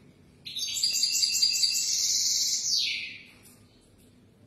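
European goldfinch singing one phrase of about three seconds, starting about half a second in: a quick run of high, repeated twittering notes that ends in a falling note.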